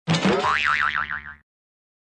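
Cartoon 'boing' sound effect: a springy twang that slides up in pitch and then wobbles fast, lasting about a second and a half before cutting off cleanly.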